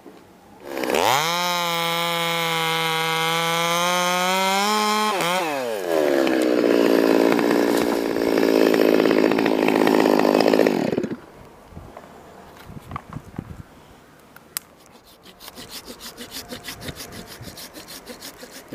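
Chainsaw throttled up about a second in and held at high revs. From about six seconds it is louder and lower-pitched as it bogs under load cutting through a limb, then it stops abruptly near eleven seconds as the throttle is released. Scattered quieter knocks and rustles follow.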